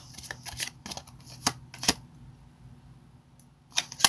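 Tarot cards being handled and laid out: a run of light clicks and snaps, the sharpest two about a second and a half and two seconds in, then one more snap just before the end.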